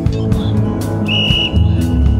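Background music: a guitar-led song with a steady beat. About halfway through, a single high steady tone starts and fades out near the end.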